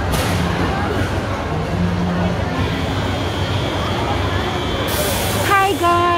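Indoor public-space background: a steady low rumble with crowd babble and scattered voices. A thin steady high tone comes in about halfway through, a hiss rises near the end, and a voice calls out just before the end.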